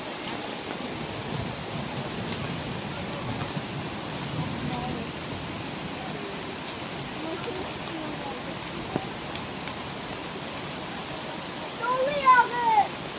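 Heavy rain falling steadily on leaves and ground, a continuous even hiss, with the rush of a flood-swollen mountain river blended underneath.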